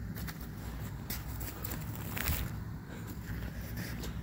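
Footsteps on frozen, snowy ground and the rustle of clothing as a man swings and flings boiling water into −20 °C air, with a few faint knocks.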